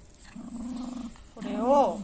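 Toy poodle growling while guarding a baguette it has grabbed: a steady low growl, then a louder growl that rises and falls in pitch near the end.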